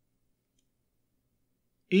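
Near silence: a faint low hum of room tone, with a single faint tick about half a second in.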